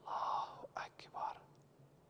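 A man whispering Arabic prayer phrases, the tasbihat "Subhan Allah, walhamdulillah, wa la ilaha illallah, wallahu akbar", recited under the breath in short bursts during the first second and a half.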